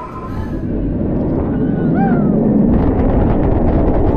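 Scream floorless steel roller coaster train rolling on its track with a building rumble. From a little past halfway comes a rapid, even clatter, typical of the train being drawn up the lift hill with the chain and anti-rollback clicking.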